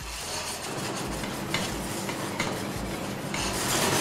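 Light scraping and a few small clicks of a plating utensil on a porcelain plate, over a steady kitchen background noise.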